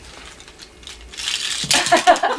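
Paper rustling and crinkling as it is handled, starting about a second in and growing busier near the end.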